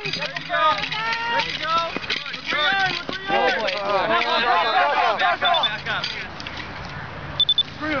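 Spectators and teammates shouting and yelling encouragement, many voices overlapping. Near the end come a few short, high beeps.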